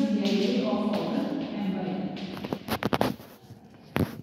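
Classroom voices for about two seconds, then a quick run of sharp taps of chalk on a blackboard and one more tap near the end.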